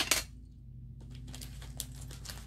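Small hard craft items being handled and set down on a table: a sharp knock right at the start, then a few faint light clicks.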